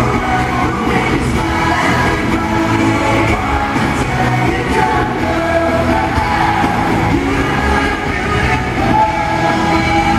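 Live pop song with a band and lead vocals, heard from the audience in an arena. The music and singing keep on at a steady loud level with no break.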